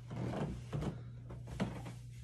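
Fabric and bedding rustling as a person sits up on a bed and pulls a cotton T-shirt off over his head: a few short scuffs in the first second and a half, over a steady low hum.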